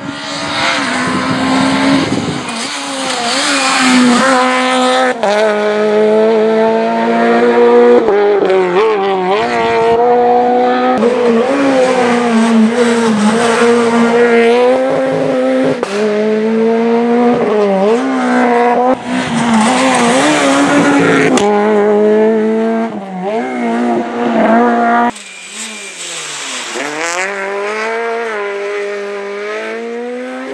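Peugeot 208 VTi R2 rally car's four-cylinder petrol engine at full throttle, revving up and falling back again and again through gearshifts and braking as the car passes at speed, over several passes. In the last few seconds the engine sounds farther away and thinner.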